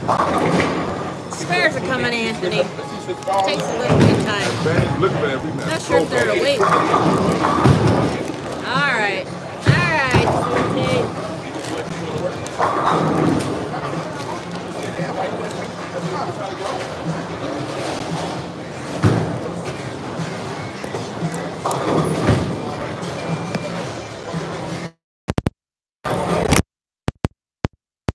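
Bowling alley din: indistinct voices and background music, with a few thuds of balls and pins. The sound cuts off suddenly near the end.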